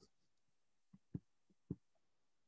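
Near silence with a few faint, short, soft knocks, about four of them in the second second.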